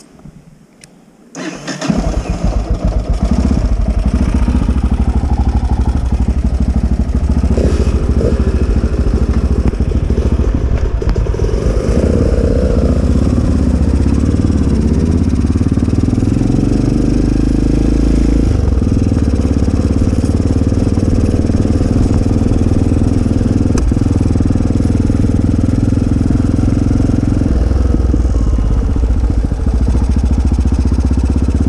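Motorcycle engine starting suddenly about a second and a half in, then running as the bike rides away along a dirt track. Its note rises and falls a few times with throttle and gear changes.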